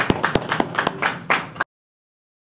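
A crowd clapping in dense, irregular claps after a sung carol, cut off suddenly about one and a half seconds in.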